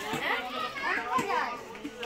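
Several high-pitched voices, children among them, talking and calling over one another in unintelligible chatter.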